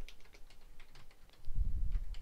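Typing on a computer keyboard: a quick run of sharp keystrokes as a short phrase is typed, with a brief low rumble near the end.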